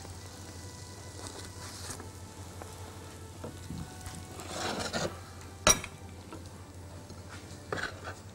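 Oil and butter sizzling in a frying pan with a steady hiss, and a single sharp click a little before the end.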